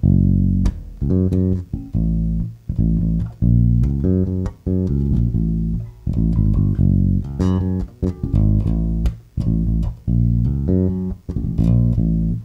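Electric bass guitar played solo: a rhythmic line of plucked notes and double-stops moving back and forth between two chords, with the third as the note that changes between them.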